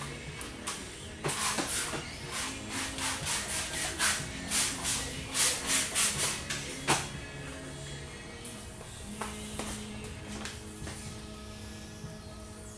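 Background music over a quick run of short hissing squirts from a spray bottle, about two a second, from about a second in until about seven seconds in. The bottle is misting slip solution for fitting paint protection film.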